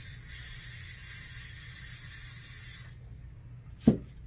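A handheld butane torch hissing steadily, cutting off abruptly about three seconds in, followed by a single sharp click near the end.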